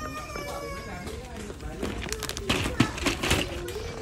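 Indistinct, wavering children's voices in the background, with no clear words.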